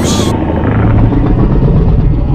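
Godzilla's deep, loud rumbling growl, a monster-film sound effect, building about half a second in.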